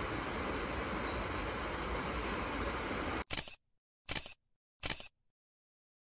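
Shallow stream water rushing steadily over rocks, cut off abruptly about three seconds in. Three camera-shutter clicks follow, each under a second apart.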